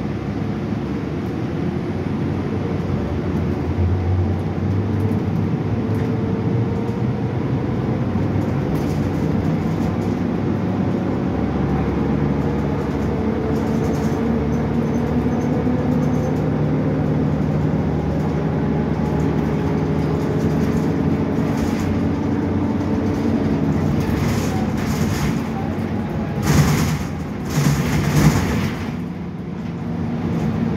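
Cabin sound of a 2015 Gillig 29-foot hybrid bus under way, its Cummins ISB6.7 diesel and Allison H 40 EP hybrid drive running, with steady tones that climb slowly and then drop away. Two louder, noisy jolts come near the end.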